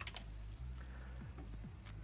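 A few faint computer-keyboard clicks, typing a stock ticker into a charting program's search box, over a low steady hum.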